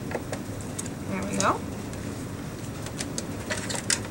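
Light clicks and scrapes of a hand scoring tool and cardstock on a plastic Martha Stewart scoring board, with a run of clicks near the end as the card is lifted off. About one and a half seconds in comes a short rising hum from a voice, the loudest sound.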